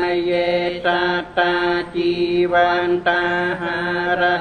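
Buddhist monk chanting Pali verses into a microphone, one voice held on a nearly level pitch in short phrases broken by brief pauses.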